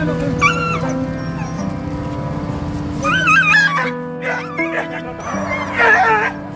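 Injured stray dog yelping and whining in distress while restrained with a catch pole. Its cries waver in pitch, come about half a second in and around three seconds in, and are loudest near the end, over steady background music.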